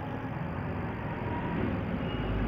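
A steady low, engine-like hum with background hiss, without clear breaks or strokes.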